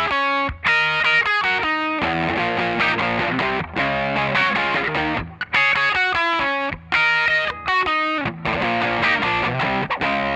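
Overdriven Les Paul-style electric guitar playing a rock chord riff: chords struck and let ring in short phrases, several stopped sharply by muting, with brief gaps between phrases.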